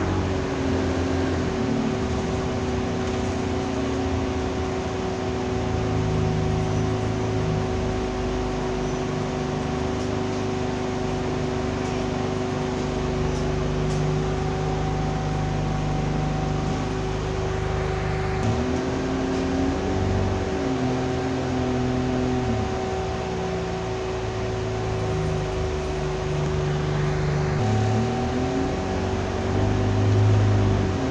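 Alexander Dennis Enviro200 diesel bus running, heard from inside the passenger saloon. Its engine note holds steady, then shifts and glides in pitch about eighteen seconds in and again near the end, under a steady whine and road noise.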